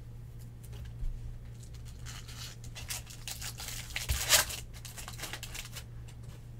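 Trading cards and thin plastic card sleeves being handled: crinkling and rustling that builds from about two seconds in and is loudest a little past four seconds, with a light knock about a second in.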